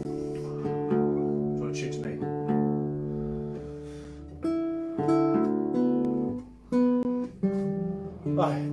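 Nylon-string classical guitar being tuned: single strings and small chords plucked and left to ring, re-struck every second or so while a tuning peg is turned.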